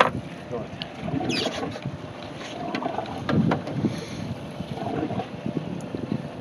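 Wind on the microphone and water moving around a small fishing boat, with a few sharp knocks and brief low voices in between.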